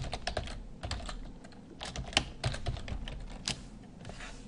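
Typing on a computer keyboard: a quick run of key clicks, a short pause, then a second run.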